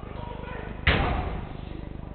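A football impact: one sharp thud about a second in, echoing briefly around the large sports hall.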